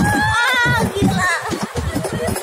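Riders laughing and shrieking on a small moving roller coaster, loudest in the first second, over the low rumble of the ride.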